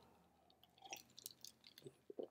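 Near silence, with a few faint small clicks.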